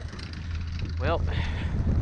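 Steady low rumble of skiing: skis running through deep fresh snow and wind on the camera microphone, with a single spoken word about a second in.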